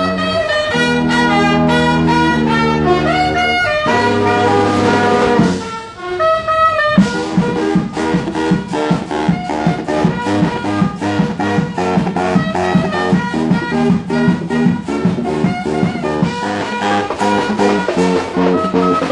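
Street marching band with saxophones, brass and drums playing an upbeat tune. Held chords give way, after a brief dip about six seconds in, to a steady pulsing beat with a low bass line.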